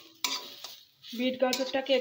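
Metal spatula stirring and scraping red amaranth greens frying in a steel wok, with a couple of sharp scrapes early on over a light sizzle.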